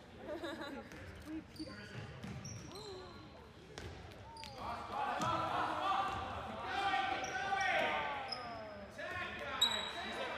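A handball bouncing on a gym's hardwood floor, with short sneaker squeaks and players' voices calling out, busiest from about five seconds in. The large hall gives it an echo.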